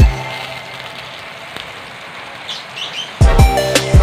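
Butter melting and sizzling in hot oil in a frying pan, a steady hiss, with a few faint bird chirps about two and a half seconds in. Background music with a beat cuts back in near the end.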